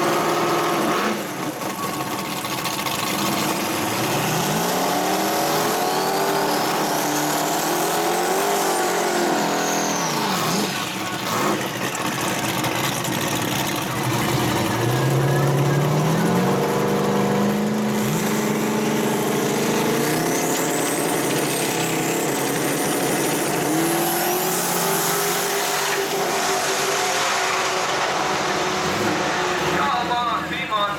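Drag-strip run of a 1994 Camaro Z28's big-turbo LT1 V8 on E85: the engine revs rise and fall several times through the burnout and launch, with a high turbo whistle climbing twice. A second car's engine runs alongside.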